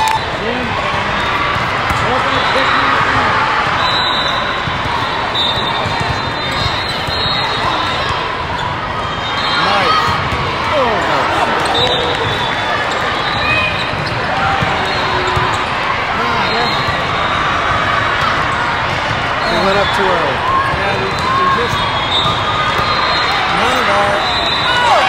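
Busy indoor volleyball tournament hall: a steady din of many voices, with balls being struck and bouncing and sneakers squeaking on the courts.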